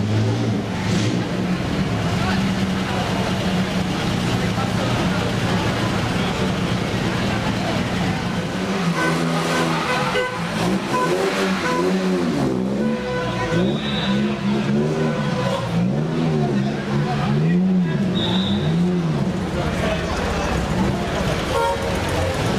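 Classic sports-car engines running at low speed in a narrow street. A steady drone is followed, from about nine seconds in, by an engine note that rises and falls over and over. Two short high peeps sound near the middle.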